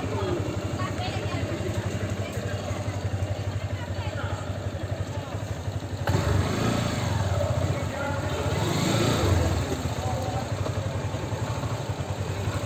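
Motorcycle engine running at low speed, with indistinct voices in the background.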